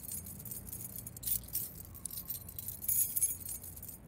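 Soft metallic jingling, like keys jangling, in short irregular runs over a low steady hum.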